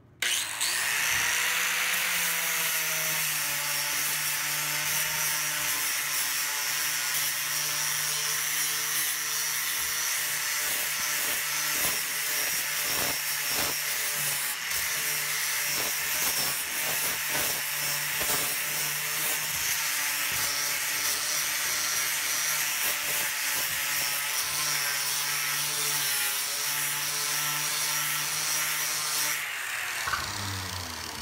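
A 4.5-inch angle grinder with a 40-grit flap disc starting up, its motor winding up to speed over the first second or two, then grinding thinset mortar off a plywood subfloor. It runs steadily and stops shortly before the end.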